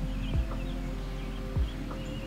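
Background music: held notes at several pitches over a deep kick-drum beat.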